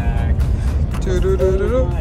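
Steady low rumble of a moving car heard from inside the cabin. About halfway through, a melodic voice or music comes in over it.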